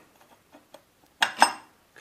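Steel ring gear of a Toyota Prius Gen 2 transaxle's power split device clinking against the planet carrier as it is set back into place: a few light ticks, then a sharp metallic clank with a brief ring about a second and a quarter in.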